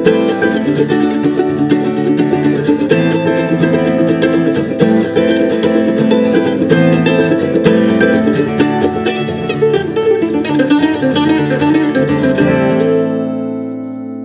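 Mandolin and acoustic guitar playing an instrumental folk passage with quick picked notes, then landing on a final chord that rings out and fades near the end.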